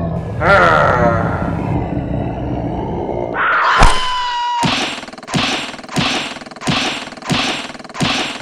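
Cartoon fight sound effects: a noisy scuffle with a rising whoosh into one loud impact near the middle, then a run of punch hits landing evenly, about one and a half a second.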